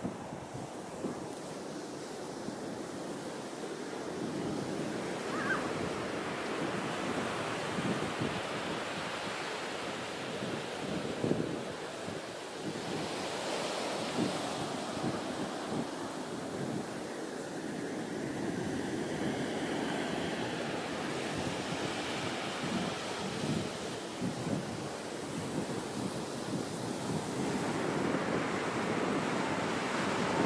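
Steady wash of ocean surf, with wind buffeting the microphone in irregular gusts.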